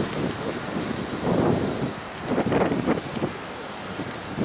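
Wind buffeting the camera microphone outdoors, a rough rushing noise that swells and eases.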